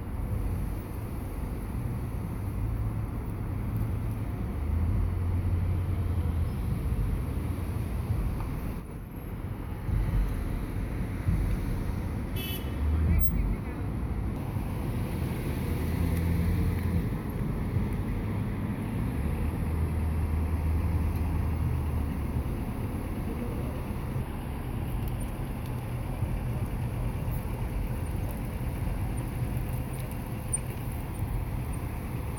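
Road traffic noise: cars running and passing with a steady low rumble, and a brief high-pitched tone, like a short horn toot, about twelve seconds in.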